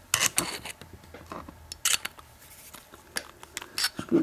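Phillips screwdriver working a screw in the base of a steel padlock body: small metal clicks and scrapes, bunched near the start, once about two seconds in and again near the end.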